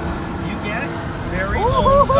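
Indistinct voices, with a child's high voice rising and falling near the end, over a steady low rumble.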